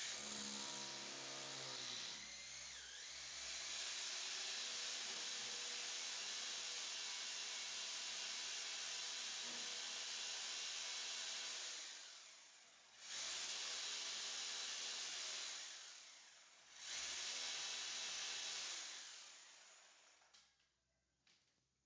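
Corded electric drill boring a hole into a wall. It starts suddenly and spins up, runs steadily for about twelve seconds, eases off twice briefly and picks up again, then winds down near the end.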